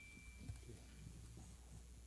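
Near-silent room with a steady low electrical hum and a few faint soft thuds of footsteps on a carpeted floor.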